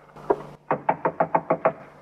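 Knocking on a door, a radio sound effect: a quick run of about seven raps, about six a second.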